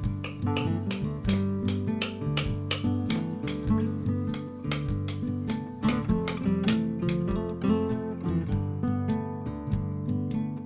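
Acoustic guitar music, picked and strummed.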